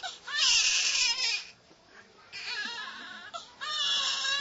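Newborn baby crying: a loud, high wail, a short pause for breath, then a second, softer wail, with another cry starting near the end.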